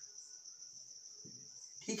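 A marker pen writing faintly on a whiteboard, under a steady high-pitched trill that sounds like an insect's and holds on without a break.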